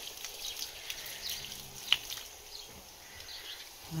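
Water trickling and splashing from a copper discharge pipe on an outside wall as a central heating system is drained of its pressure. A sharp click about two seconds in.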